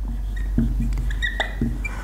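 Dry-erase marker squeaking and ticking across a whiteboard in a run of short strokes as a word is written.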